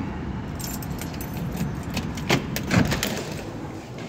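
Keys jangling: a run of light, metallic jingling clicks with some rustling, over a low steady rumble.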